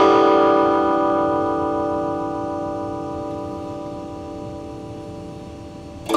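Stratocaster-style electric guitar: a single chord strummed once and left to ring, fading slowly over about six seconds.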